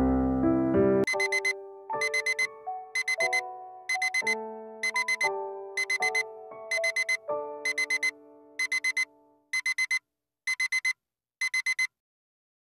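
Digital alarm beeping in quick groups of four, repeating about once a second, over soft piano music; the piano fades out near the end and the beeping carries on alone.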